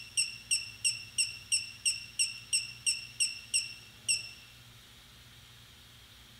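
A high-pitched chirp repeating evenly about three times a second, thirteen times, each with a sharp start and a short fade, stopping about four seconds in, over a faint steady low hum.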